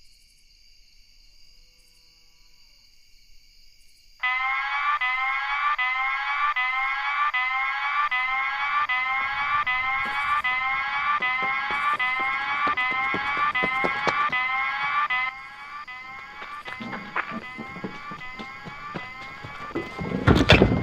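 An electronic alarm siren starts suddenly about four seconds in, a loud whooping tone that rises again and again at about two sweeps a second. Near three-quarters of the way through it drops sharply in level and carries on fainter, with scattered knocks and thumps.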